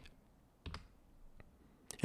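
Near silence broken by a few faint clicks of a computer mouse as the page is scrolled.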